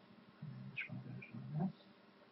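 A man's low, indistinct mumbling for about a second, faint and without clear words.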